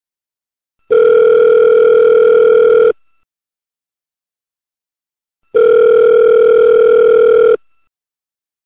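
Telephone ringback tone, the ringing a caller hears while the called phone rings unanswered. There are two long steady rings of about two seconds each, a few seconds apart.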